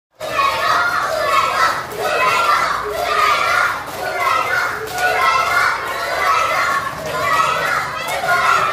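A crowd of children shouting and cheering together in repeated swells, with hand-clapping.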